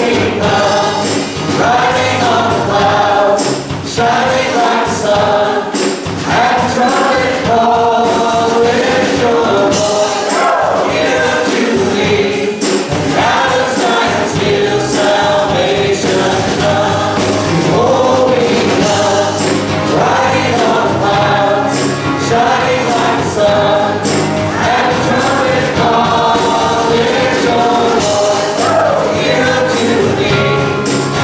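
A church worship team of men and women singing an upbeat praise song together into microphones, with instrumental backing and a steady beat.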